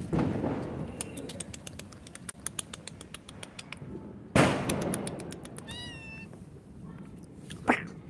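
A cat meowing once, a short call about six seconds in. Behind it, a run of sharp crackles and a sudden loud bang about four seconds in, each bang fading away slowly, in the manner of Diwali firecrackers going off.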